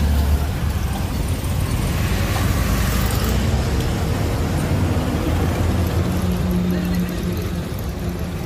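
Road traffic passing on a highway: a continuous low rumble of vehicles, with a steady engine hum coming in about six seconds in.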